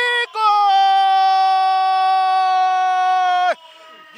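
A male football commentator's long, held shout of "goal!", a single steady high-pitched call lasting about three seconds that drops away at the end, greeting a goal just scored.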